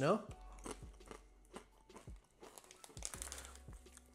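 Plastic snack bag crinkling faintly as it is handled and a hand reaches into it, with scattered light rustles and a denser patch of crackling about three seconds in.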